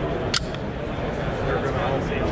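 One sharp metallic click from a Steyr L9-A2 pistol's action, worked by hand while dry-testing the trigger reset, which remains very quiet. A steady babble of crowd voices lies underneath.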